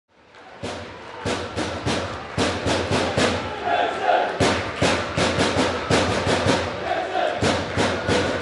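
Music with a strong, fast percussive beat, rising out of silence in the first second.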